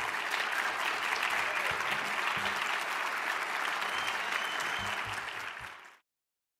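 A large audience applauding with a steady, dense clapping that fades in the last second and then cuts off abruptly.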